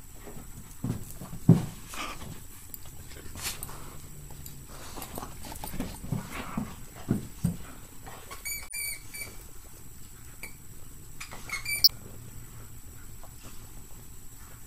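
A greyhound playing with a stuffed toy on carpet: scattered short low thuds, and two brief clusters of high-pitched squeaks in the later half.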